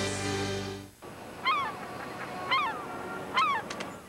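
Commercial music ends within the first second. Then comes a faint steady background with three short bird calls, each falling in pitch, about a second apart.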